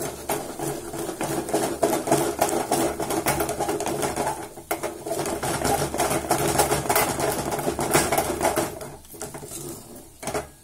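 Wooden handle stirring thick ragi kali dough hard in a steel pot: a fast, continuous clatter of wood knocking and scraping against the pot. There is a brief break about halfway, and it eases off near the end.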